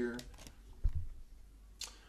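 The tail of a spoken word, then a single dull, deep thump about a second in, and a faint sharp click near the end.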